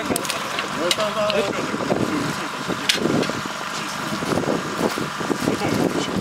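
Indistinct, muffled talk with a few sharp knocks as a fishing net is handled and pulled out of a small aluminium boat, over a faint steady hum.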